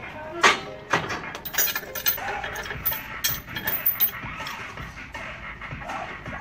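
Heavy weight plates on a loaded bar knocking and clinking in a set of short metallic hits. The loudest is a sharp clank about half a second in, followed by a run of quicker clinks over the next few seconds.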